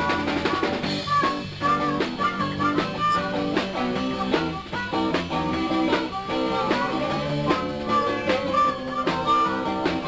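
Live blues band playing an instrumental passage: amplified harmonica held to a microphone carries the lead with long bent notes, over electric guitar and a steady drum beat.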